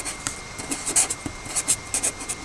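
Felt-tip pen writing on paper: a quick run of short strokes as a letter and numbers are written.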